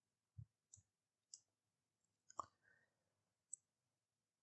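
Near silence broken by about five faint, sharp clicks spread over the few seconds, the loudest about two and a half seconds in: computer mouse clicks.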